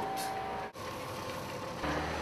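Steady outdoor street background noise with no speech. It drops out sharply for a moment under a second in, and a low steady hum comes in near the end.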